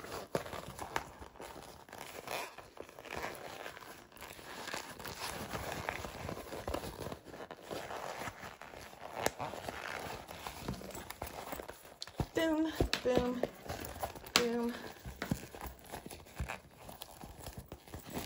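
Vinyl bag crinkling and rustling as hands work it right side out, with small scattered clicks. A few short hummed or sung notes come about two-thirds of the way through.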